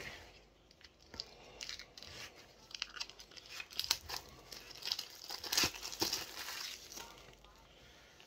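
Hands opening a Funko Soda collectible can and unwrapping its contents: packaging crinkling and tearing, with many small clicks, busiest in the middle.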